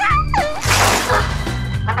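Upbeat background music with a steady low beat, with a short voice-like glide at the start and a brief burst of hissing noise about half a second in.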